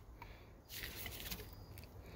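Faint rustling of a rubber-gloved hand turning a metal can of Sea Foam, a little louder in the second half.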